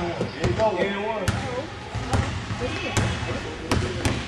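A basketball being dribbled on a gym floor: a string of sharp, unevenly spaced bounces. Voices chatter in the hall underneath.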